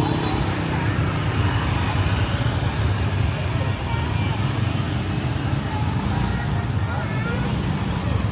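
Motor scooter engines running as several scooters ride past on a busy street, over a steady hum of traffic and faint background voices.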